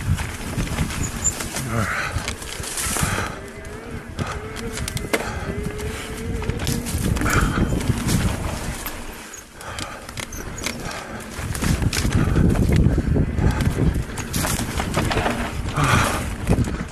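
Wind rushing over the microphone and the rattle of a bike rolling fast down a rough dirt trail, with a short lull about nine seconds in.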